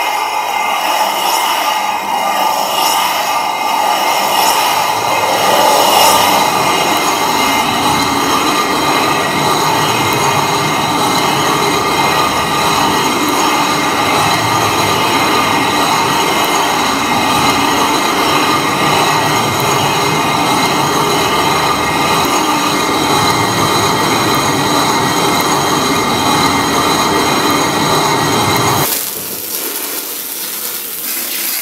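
Lithographic limestone being ground wet with grit: a loud, steady grinding scrape with a faint whine in it. It stops suddenly shortly before the end.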